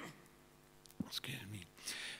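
Only speech: about a second of quiet room tone, then a man's soft, breathy voice resuming.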